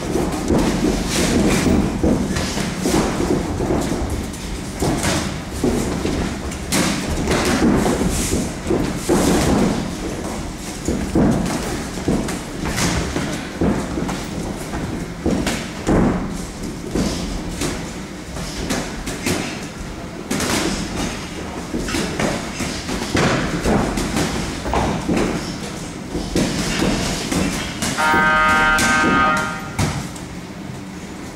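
Boxing gloves landing punches during sparring, a steady run of dull thuds with shuffling footwork on the ring canvas. Near the end a gym round timer sounds a buzzer for about a second and a half, marking the end of the round.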